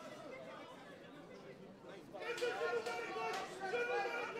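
Faint hall noise, then about two seconds in, voices shouting in the background of an arena, held calls rather than the clipped rhythm of narration, with a couple of sharp clicks.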